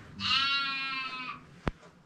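An animal call, bleat-like, sounding once for about a second, followed by a single sharp click.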